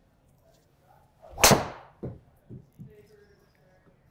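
Cobra Darkspeed Max driver striking a golf ball: one loud, sharp crack about a second and a half in, followed by a few faint knocks.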